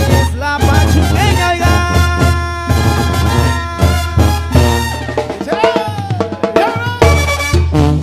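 A Mexican banda brass band playing a cumbia live: brass and reed melody lines with short pitch glides over a steady beat of bass drum and snare, with no singing in this passage.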